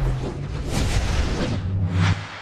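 A TV sports channel's handball ident sting: a short burst of music with a deep bass boom and swooshes, with a bright swoosh a little under a second in and a last hit near the end.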